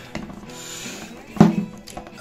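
Handling of a Colt Lightning .22 pump-action rifle as a hand takes hold of its pump slide: a brief soft rub, then one sharp knock about one and a half seconds in.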